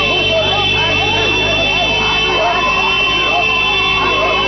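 Car horns sounding together in one continuous, unbroken honk, the way a wedding car convoy celebrates, over a crowd's shouting and calling voices.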